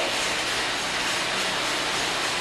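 Steady rushing whoosh of an air bike's fan being pedaled.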